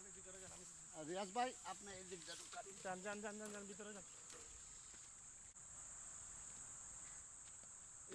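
Faint, distant voices talking for about three seconds over a steady, high-pitched buzz of insects; after about four seconds only the insect buzz remains.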